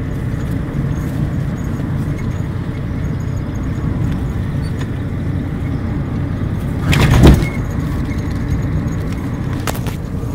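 A car on the move heard from inside the cabin: a steady low rumble of engine and road noise, with one louder knock about seven seconds in.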